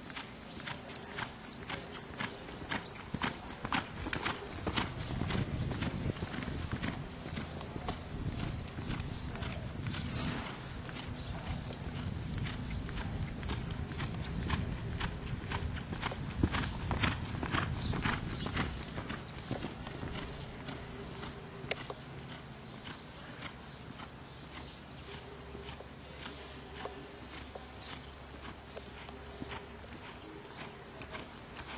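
Hoofbeats of a ridden reining horse, a steady run of clip-clop strikes. They are loudest through the middle with a low rumble under them, and quieter in the last third.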